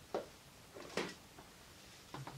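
Two brief soft rustles, about a second apart, as a knit cardigan is laid over the back of a chair.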